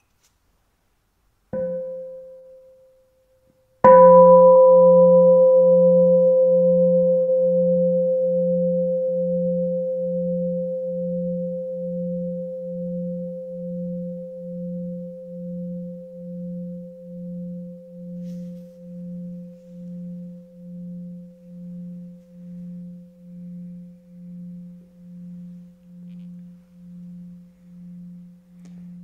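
Meditation bowl bell: a light tap that dies away within about a second and a half, then a full strike about four seconds in that rings on, fading slowly with a slow, even wavering just over once a second. The light tap wakes the bell before the full sound is invited for mindful listening.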